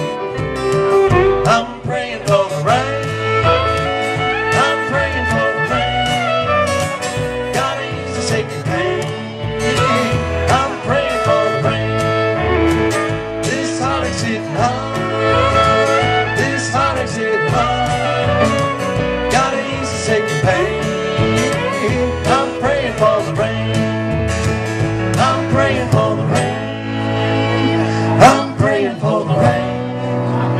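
Live country-bluegrass band playing an instrumental break: acoustic guitar, upright bass and electric piano keep a steady beat while a lead line with sliding notes carries the melody.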